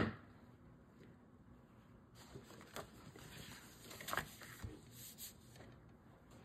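Faint handling of card stock on a table: soft paper rustles and a few light taps as scored paper flaps are opened and folded.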